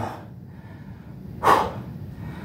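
A man's single short, sharp breath about one and a half seconds in, taken while he holds a push-up position mid-set to catch his breath.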